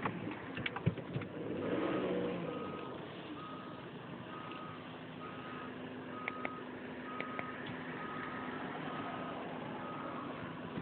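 A vehicle's reversing alarm beeps a single steady tone about once a second, starting nearly two seconds in. Under it runs a low steady hum, and there are a few sharp clicks near the start.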